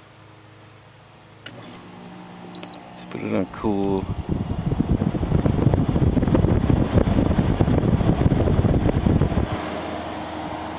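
GE window air conditioner starting up: a control-panel button beep, then a low steady fan-motor hum, running on freshly replaced fan motor bearings. From about three and a half seconds in, its blower air rushes loudly and roughly against the microphone, then drops away abruptly near the end to a quieter steady hum.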